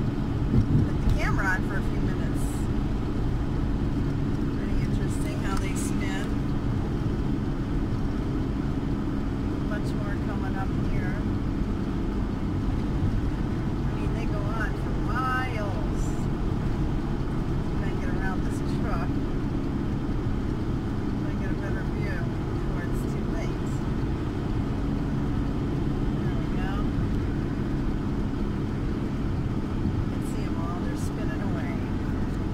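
Steady engine drone and road noise of a VW Winnebago Rialta motorhome cruising at highway speed, heard from inside the cab. Short high chirps or squeaks come through now and then.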